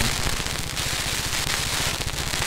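A SYM 150cc New Fighter's single-cylinder engine running at low speed as the bike rolls down a slope: a rapid, even low pulsing under a steady hiss of wind on the microphone.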